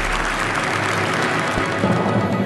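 Audience applause blending into the video's closing music: the clapping thins out while low bass notes of the music swell near the end.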